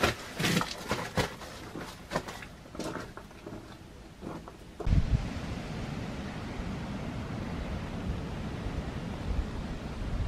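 Rustling and light knocks of someone moving through dry leaves on the stone floor of a long barrow's chamber. About halfway through, this cuts to wind buffeting the microphone outdoors, a steady low rush with gusts.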